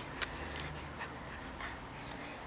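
Small long-haired dog panting and whimpering softly as it excitedly greets its owner, with a few faint clicks.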